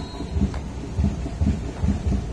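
Low rumbling thumps on the microphone of a moving handheld camera, about four in two seconds at uneven spacing, over a steady low rumble.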